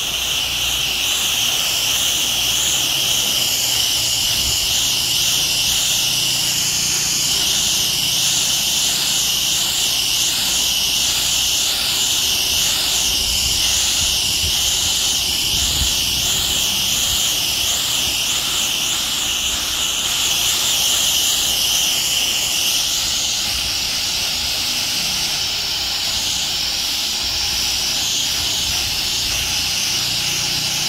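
Steady hiss of a wide fan spray from a pressure-washer gun and wand as it wets vinyl house siding, with a low rumble beneath it. The hiss changes slightly about three quarters of the way through.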